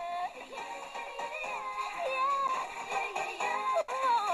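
Music with singing from a long-distance FM broadcast in the OIRT band, received by sporadic-E skip and heard through the small speaker of a Tecsun PL-310 portable radio. The signal drops out for an instant near the end.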